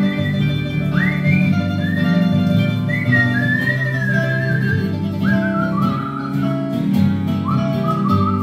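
Instrumental passage of a song played on a Korg Triton Studio keyboard: a plucked, guitar-like chord backing under a high, whistle-like lead melody whose notes slide up into pitch and glide between phrases.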